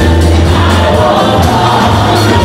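Upbeat gospel music: a choir singing over a heavy bass line and steady percussion.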